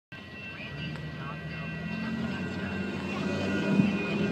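Car engine and road noise heard from inside the cabin, a steady low rumble growing louder, with faint voices of people talking in the car.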